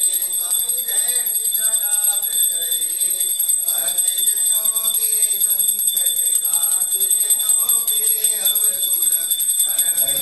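A hand bell is rung rapidly and without a break, a steady high ringing made of fast even strikes. Beneath it, voices chant a prayer.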